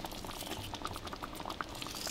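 Creamy tomato gravy simmering in a skillet: faint bubbling with small, scattered pops.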